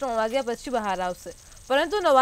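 A woman's voice reading the news in Gujarati, with a short pause a little past halfway.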